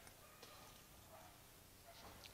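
Near silence: faint background noise in a pause between speech.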